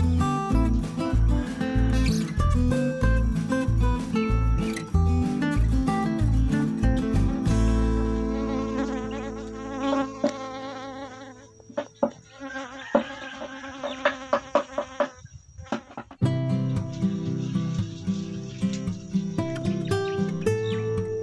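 Asian honey bees (Apis cerana) buzzing around an opened hive, over background music with a steady beat. The music drops away in the middle, where a few sharp knocks from the wooden hive box come through.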